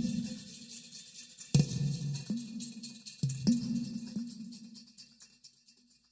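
Sampled udu (clay pot drum) from 8Dio's Aura Studio Percussion library: the tail of a fast roll fades, then come two deep, pitched strikes about a second and a half apart. Each strike trails a weird, echo-like string of repeats from a textured convolution delay, dying away near the end.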